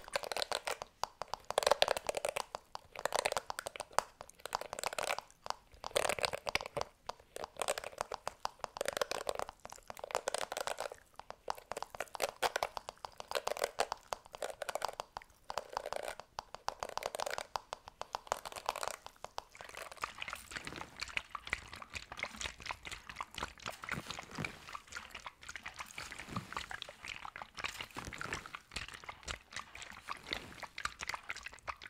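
Bristle hairbrushes scratching across a microphone's grille in slow sweeps, one every second or two. About two-thirds of the way in this gives way to a finer, even crinkling of a plastic bag rubbed over the microphone.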